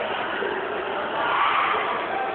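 Crowd of spectators in a hall, many voices mixing into a steady din that swells louder a little past halfway through.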